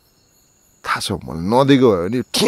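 A pause of near silence with a faint, high, steady tone, then about a second in a man's voice starts: a drawn-out utterance whose pitch rises and falls.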